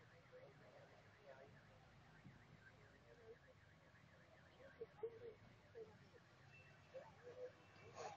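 Near silence, with faint distant voices now and then, more of them in the second half, over a faint, quickly repeating high sound.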